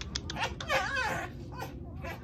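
Two foxes squabbling: a run of quick chattering clicks, then a wavering whine about half a second in, the kind of fox noise the keeper calls complaining and chatty.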